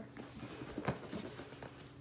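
Cardboard shoe box being handled and lowered onto a table, with faint rustling and one sharp knock just under a second in.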